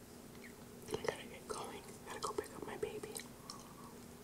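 Close-miked chewing of a grilled chicken wrap: soft wet mouth clicks and smacks, starting about a second in.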